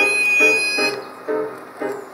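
Harmonica (blues harp) holding one long high note over piano chords repeated about twice a second. The harmonica stops about a second in, leaving the piano chords alone.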